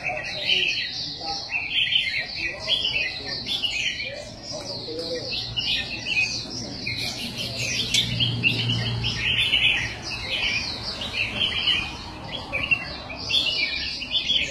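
Caged red-whiskered bulbuls (jambul) singing: many quick, overlapping chirps and warbled phrases, dense and continuous, over a faint low hum and background murmur.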